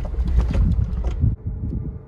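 Cabin noise of a vehicle driving on a rough track: a low rumble with knocks and rattles from the bumps, turning quieter and smoother about a second and a half in.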